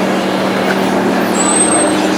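A vehicle engine running steadily, heard as a constant low hum over outdoor background noise. A brief high-pitched tone sounds about one and a half seconds in.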